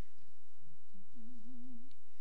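A man humming one held note with a slow waver, beginning about a second in and lasting under a second. It is the song leader giving the starting pitch for an a cappella hymn.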